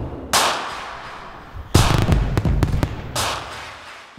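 Fireworks bursting: three booms about a second and a half apart, each trailing off into crackle, with a quick run of sharp cracks after the second.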